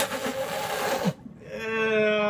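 A person's loud breathy, noisy burst lasting about a second, then a long vocal sound held at one steady pitch. It is a reaction to a foul-tasting jelly bean, amid laughter.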